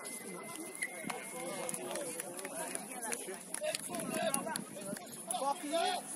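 Rugby players calling and shouting to each other across an open pitch, the words indistinct, with louder calls about four seconds in and again near the end.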